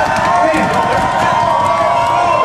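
Loud crowd noise: many people talking and shouting at once, without a break.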